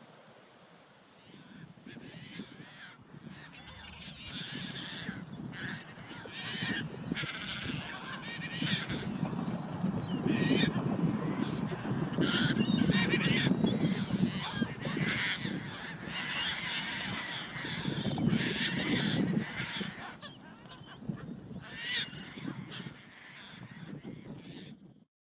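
A group of Caspian terns calling, many harsh, raspy calls overlapping one after another, building after the first couple of seconds and loudest through the middle.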